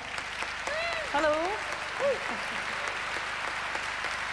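Audience applauding steadily in a concert hall, with a short spoken "hello" over it about a second in.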